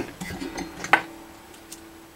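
Light metallic clicks and ticks of a steel feeler gauge being handled against an electric guitar's strings. A sharper click about a second in is followed by a faint steady tone: a string left ringing.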